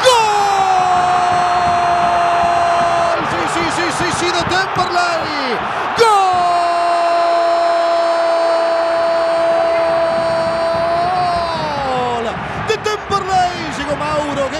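A football commentator's drawn-out goal cry: a long held shout of 'gol' for about three seconds, then a second, longer one starting about six seconds in and breaking off near the end. Steady crowd noise runs underneath.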